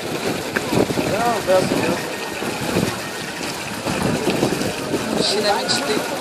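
Water from a stone fountain's spouts splashing into its basin, under the hubbub of many people's voices.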